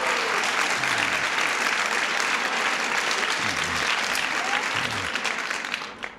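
Audience applauding, with a few voices mixed in; the applause dies away near the end.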